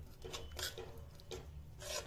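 Steel spoon scraping a metal kadhai while stirring a thick masala paste of curd and ground spices, in a few short rasping strokes about half a second apart. The curd is stirred steadily as it cooks so that it does not split.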